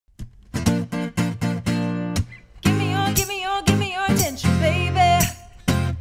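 Acoustic guitar strummed in a run of chords, then a woman's singing voice comes in over it about two and a half seconds in, with wavering held notes.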